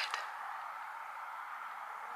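A steady, quiet hiss of outdoor background noise, with no distinct event.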